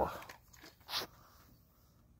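The end of a spoken word, then one brief hissing rustle about a second in, likely from handling as the drill is picked up; otherwise near silence. The drill is not running.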